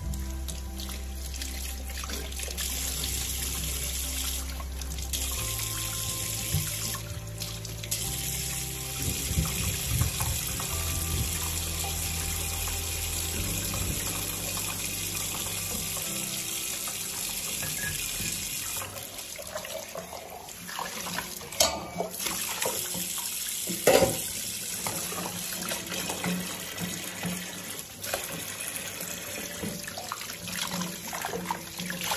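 Kitchen tap running into a stainless-steel sink as dishes are rinsed by hand, a steady splashing that turns more broken later on, with a couple of sharp clinks of crockery about two-thirds of the way through.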